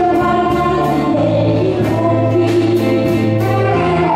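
Live band music with saxophones and a group of voices singing, over held bass notes and a steady beat.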